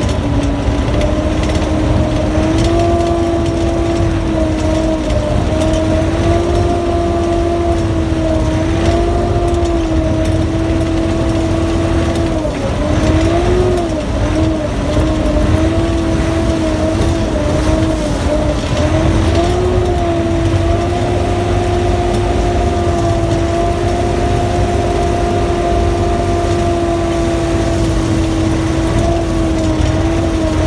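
Sherp amphibious ATV's Kubota diesel engine and drivetrain running steadily, heard from inside the cab as it moves through lake water, with a constant mid-pitched whine over a low rumble. The whine wavers briefly about twelve to fourteen seconds in.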